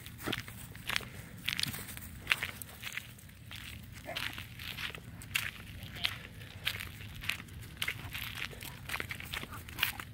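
Footsteps of a person walking at a steady pace on asphalt and grass, about one step every two-thirds of a second.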